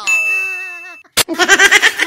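A bright, bell-like ding sound effect sounds once and rings out, fading over about a second. Then a sharp click and an excited, laughing voice follow.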